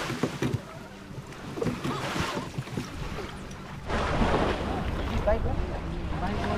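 Beach ambience: people's voices chattering in the background over small waves washing at the water's edge. About four seconds in, wind starts buffeting the microphone and a low rumble takes over.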